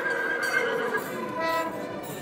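Festival music with a wind instrument playing long held notes that step from one pitch to another.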